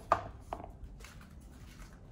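A pair of shoes set down on a stone tile floor: two sharp knocks in the first half second, the first the louder, then a few faint light taps.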